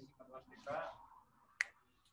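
A person speaking faintly, off-microphone, during the first second. About one and a half seconds in comes a single sharp click.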